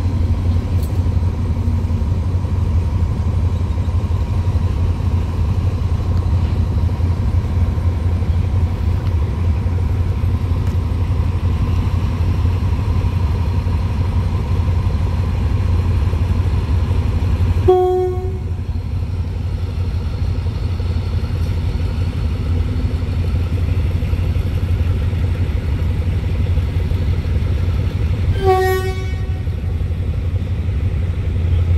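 Diesel locomotive's horn giving two short toots, one a little past halfway and a slightly longer one near the end, over a steady low rumble.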